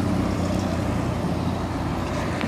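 A car and then a van driving past close by, their engines making a steady low hum.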